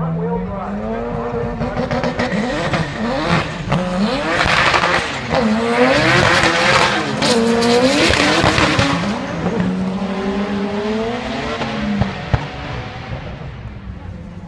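Drag-racing cars accelerating hard down the strip, engine pitch climbing and dropping back several times as they shift up through the gears, loudest in the middle.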